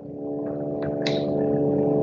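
A steady, unchanging pitched drone rich in even overtones, as loud as the surrounding speech, with a couple of faint clicks about a second in.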